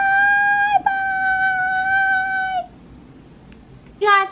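A child's voice holding a high, wordless sung note at a steady pitch: two long notes, the first breaking off under a second in and the second held until it stops near the three-second mark.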